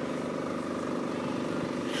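A motor running steadily, giving a constant-pitched engine hum.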